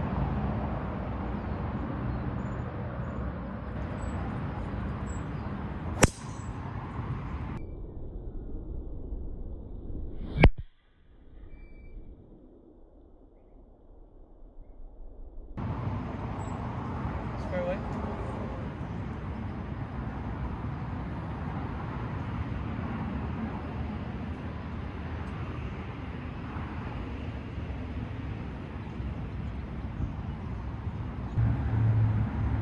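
Golf driver striking a teed ball: a sharp crack about six seconds in and a louder one about ten seconds in, over a steady outdoor rumble.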